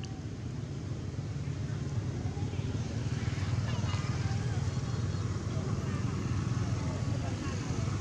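A steady low rumble runs throughout, under faint, indistinct voices and a few faint chirp-like calls.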